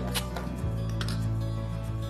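Background music with a steady low bass line, with two short clicks about a quarter second and a second in.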